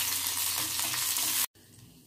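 Green chillies sizzling steadily as they fry in hot oil in a kadai, with light scrapes of a spoon stirring them. The sizzle cuts off suddenly about three-quarters of the way through.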